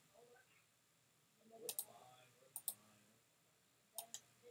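Computer mouse clicking: two pairs of quick clicks, the second pair just under a second after the first, over near silence.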